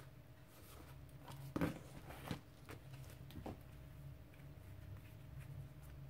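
Faint handling sounds of a thick paper journal and its cover: a few soft knocks and rustles as the stack of pages is moved and set down on a wooden table, over a faint low hum.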